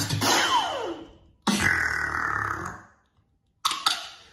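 Beatboxer's mouth and throat effects: a falling pitched glide of about a second, then a held throaty bass sound of over a second, and a short sharp burst near the end, each separated by brief silence.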